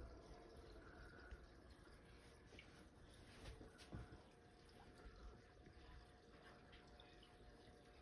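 Near silence, with faint bubbling and dripping of aquarium water from an air-driven sponge filter.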